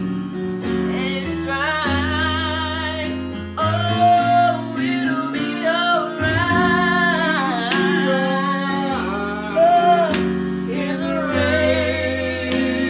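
A woman singing a gospel worship song in long, wavering held notes with vibrato, a man's voice joining at times, over sustained keyboard chords.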